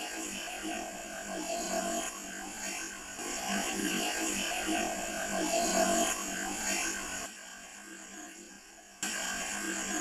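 Amplified, filtered recorder hiss with a faint, indistinct murmur, heard by the investigator as a voice saying "I need"; the level drops about seven seconds in and jumps back up near the end.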